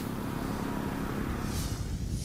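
Wind blowing on an outdoor microphone: a steady, uneven low rumble, with a brief high hiss about one and a half seconds in.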